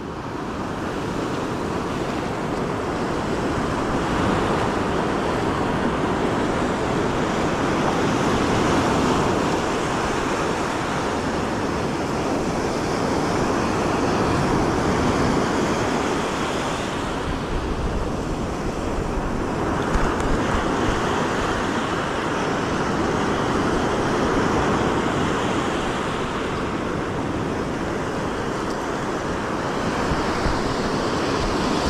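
Ocean surf breaking and washing up a sandy beach, a steady rush that swells and eases in slow waves every several seconds.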